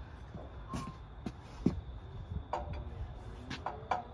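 Scattered clinks and knocks of metal being handled around an engine hanging from a shop engine hoist, with the sharpest knock about halfway through, over a low steady background.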